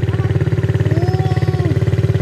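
Kayo 110 kids' quad's small single-cylinder four-stroke engine idling steadily with a fast, even putter.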